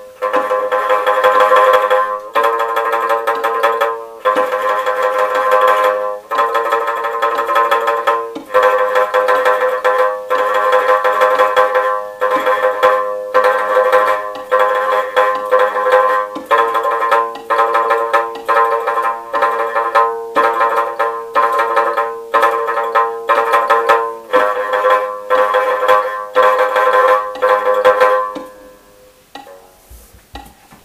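Mongolian shanz (shudraga), a three-string skin-headed lute, plucked with the fingers through a slow exercise at a steady pulse. Notes change every second or two, some played as tremolo, and the playing stops shortly before the end.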